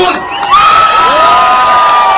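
A rally crowd cheering, with several voices holding one long shout together from about half a second in.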